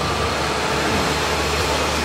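Steady low motor hum under an even rushing noise.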